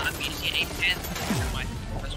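Animated episode's soundtrack playing: music under a few short, sharp sound-effect hits in the first second, then a falling sweep about a second and a half in.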